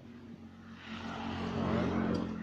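A motor vehicle passing by: engine hum and road noise build up over about a second and a half, peak near the end, then fade away.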